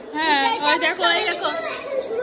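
Speech only: a young girl talking in a high-pitched voice.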